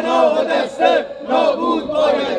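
A crowd of protesters chanting a slogan in unison, loud shouted syllables in a steady rhythm.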